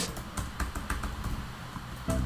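Typing on a computer keyboard: an irregular run of keystroke clicks as code is entered.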